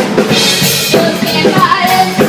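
A live rock band playing: electric guitar, bass guitar and drum kit, with a bright crash about half a second in, and a woman singing into a microphone.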